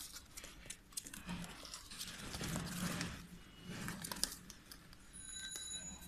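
Kittens scrambling and clawing on a cardboard floor and a slatted plastic basket, an irregular scratching and rustling with sharp clicks, busiest in the middle.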